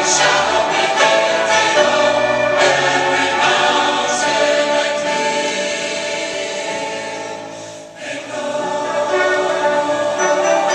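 Large church choir singing with piano and instrumental accompaniment. The music thins and dips briefly about eight seconds in, then comes back in.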